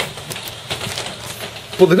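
A few faint clicks and handling noise as hands and camera move about a keyboard, with speech resuming near the end.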